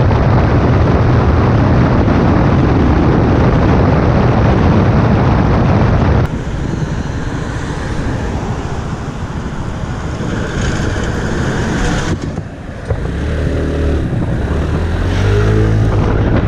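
Loud wind noise on the microphone while a Yamaha X-MAX 250 scooter rides at speed, dropping away suddenly about six seconds in as it slows at a crossing. After a quieter stretch of engine and road noise, the scooter's single-cylinder engine rises in pitch near the end as it accelerates away, with a short click just before.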